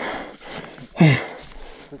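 A man panting hard, with one short grunt about a second in, while struggling with a snowmobile stuck in deep snow.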